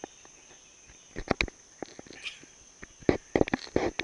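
A steady high-pitched insect drone, with scattered sharp clicks and knocks that are louder and cluster in the second half.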